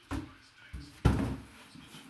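A cardboard helmet box being handled on a table: a light knock, then a louder thump with a short scrape about a second in.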